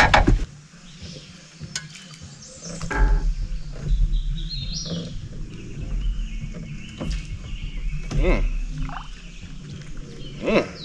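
Wild birds calling and singing in short stepped high phrases, with a lower bending call about eight seconds in. A sharp knock comes at the very start, and a low rumble runs underneath.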